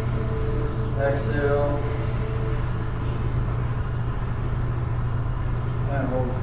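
A steady low hum runs throughout, with faint held tones during the first two seconds.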